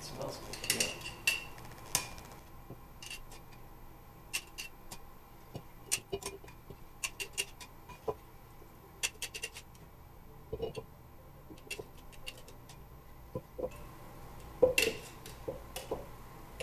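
A utensil clinking and scraping against a glass jar and a stoneware crock as sauerkraut is spooned into the jar, in irregular sharp clicks and clinks. Mixed in is the clicking of the camera's autofocus, which the uploader blames for the weird clicking heard through the video.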